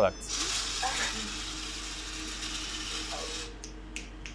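Vending machine's dispensing mechanism running steadily for about three seconds, then stopping: a vend cycle during a 'product not delivered' test, with the product taken by hand before it reaches the delivery tray.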